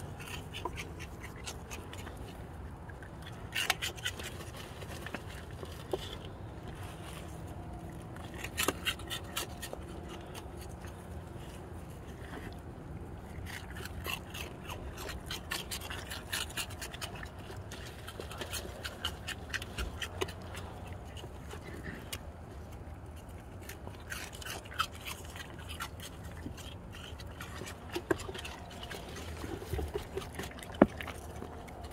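Raccoons eating from a hand at close range: bursts of crackly clicking, chewing and scraping every few seconds, over a low steady rumble.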